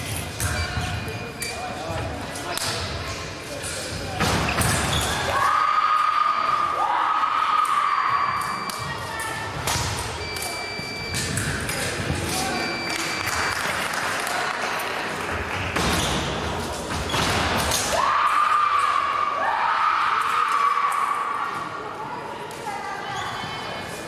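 Busy fencing-hall din, echoing: footwork stamps and blade clacks from bouts on the pistes, mingled voices and short high beeps. Twice there is a long held cry about three seconds long, one around five seconds in and one around eighteen seconds in.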